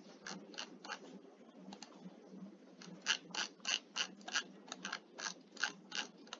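Computer mouse clicking: a few clicks in the first second, then a quicker run of about a dozen clicks from about three seconds in, over a low steady hiss.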